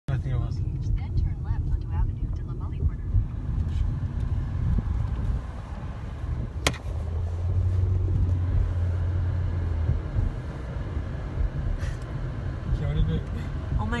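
Low rumble of a car's engine and road noise heard inside the cabin, with a single sharp click about halfway through and a steadier engine drone for a few seconds after it.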